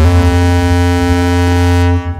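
Live electronic music: a loud sustained synthesizer chord over heavy bass, its high end dimming near the end before it cuts off suddenly.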